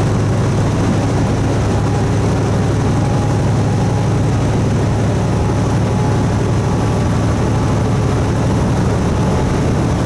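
Semi truck's diesel engine and road noise heard from inside the cab while it cruises at highway speed: a steady, loud low drone.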